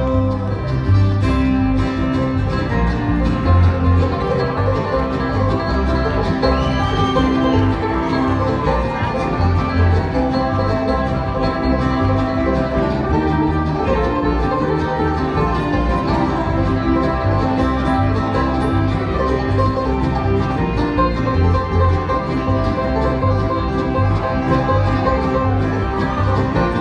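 Live bluegrass band playing, with banjo, acoustic guitars and upright bass together over a steady bass pulse.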